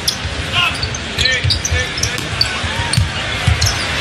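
Basketball being dribbled on a hardwood court, with repeated thumps, rubber sneaker soles squeaking on the floor, and a steady arena crowd noise underneath.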